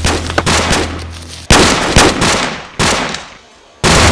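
Film gunfire sound effects: a quick string of shots, then three heavy single shots, each trailing off in a long echoing tail. The sound dies away briefly near the end before another loud shot.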